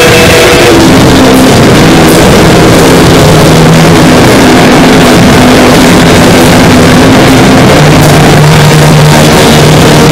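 Harsh noise: a loud, unbroken wall of distorted static with held, droning low tones that shift to a new pitch every few seconds.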